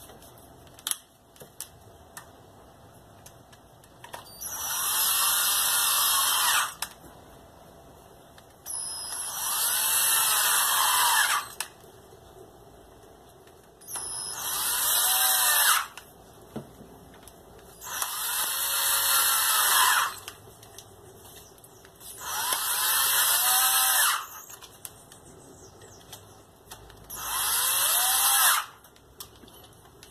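Cordless drill's motor triggered in six short bursts of about two seconds each, each spinning up with a rising whine and winding down when released.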